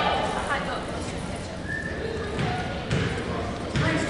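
Indistinct voices of people talking, echoing in a large gymnasium, with a few short thuds, the loudest near the end.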